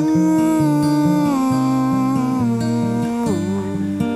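Acoustic guitar playing softly under a wordless male voice holding one long note that slides slowly downward and drops off about three seconds in.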